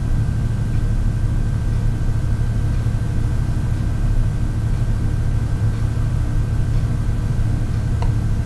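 Steady low hum and rumble of running machinery or fans, even throughout, with a faint steady high-pitched tone above it.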